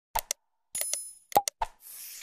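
Sound effects of a subscribe-button animation: quick clicks and pops, a short bright bell chime about three-quarters of a second in, then more pops and a whoosh starting near the end.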